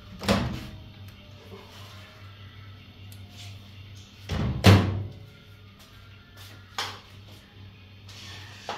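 A few dull knocks and thuds of household kitchen handling, like cupboard doors or pans being set down, the loudest a double knock about four and a half seconds in, over a steady low hum.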